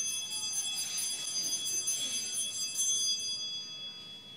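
Altar bells rung at the elevation of the chalice during the consecration at Mass: a cluster of high bell tones struck again and again, with the strokes dying away near the end while one tone keeps ringing.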